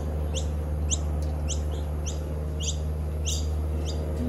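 A bird calling over and over in short, sharply rising chirps, about two a second, over a steady low hum.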